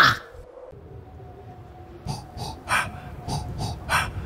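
Quiet opening of a children's song track: faint at first, then from about two seconds in short soft strokes about three a second over a faint held note.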